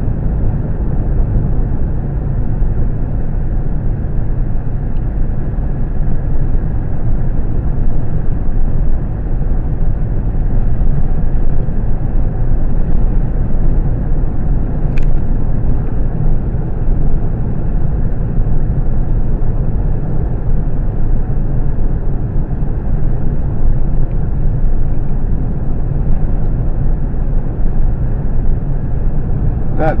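A car driving, heard from inside the cabin: steady low road noise from tyres and engine. There is a single brief click about halfway through.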